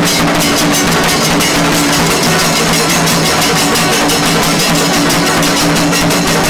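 A Kailaya Vathiyam temple ensemble playing: fast, dense drumming on large stick-beaten drums, with cymbals, over steady low drones held by long brass horns.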